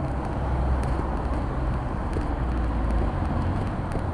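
City street traffic, with a car driving past close by: a low rumble that swells and fades over about three seconds.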